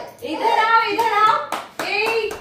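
A quick run of hand claps about one and a half seconds in, with a high, sing-song voice calling before and after them.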